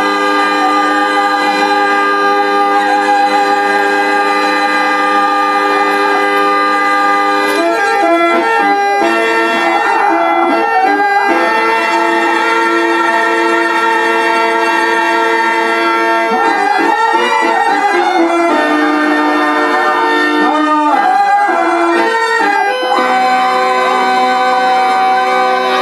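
Harmonium playing a slow instrumental interlude of long held notes and chords, moving to a new chord every few seconds.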